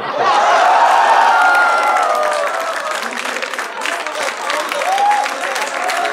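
Studio audience applauding with cheering voices. It swells sharply at the start, is loudest in the first couple of seconds, then dies down to scattered clapping and voices.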